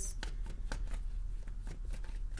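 A deck of tarot cards being shuffled by hand: a run of quick, irregular card flicks and snaps, about five a second.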